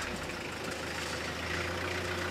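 A motor vehicle's engine running steadily at idle, a low even hum.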